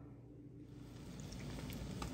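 Fish fillets sizzling in a frying pan greased with cooking spray, over medium heat. The sizzle fades in after a moment of quiet and grows steadily louder.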